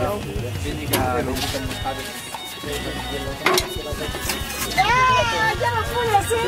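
People's voices with music in the background, and two sharp knocks, about a second in and again near the middle.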